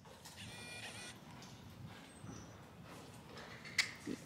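Faint, muffled hoofbeats of a horse working on the sand surface of an indoor arena. Near the start there is also a brief, faint high-pitched call.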